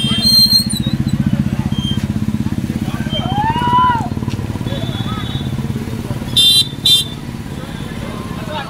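A vehicle engine idling steadily close by, with a fast even pulse. Two short high beeps come near the end, with voices from the crowd around it.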